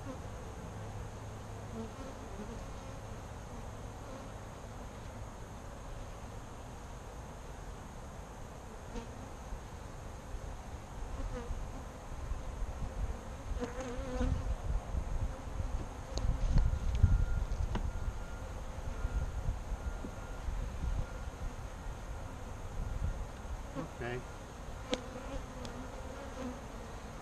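Saskatraz honey bees buzzing steadily around an open hive. About halfway through there is a stretch of low rumbling with a few sharp knocks.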